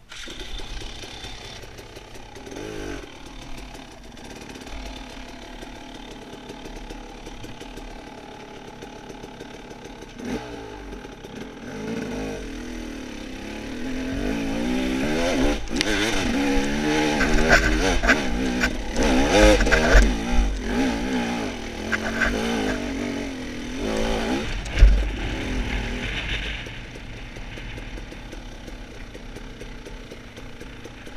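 Dirt bike engine running at low revs, then revving harder through the middle with the pitch rising and falling on the throttle before settling back down. A sharp thump sounds near the end of the hard revving.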